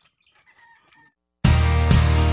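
A rooster crows faintly in the first second. After a brief silence, loud music starts suddenly about a second and a half in.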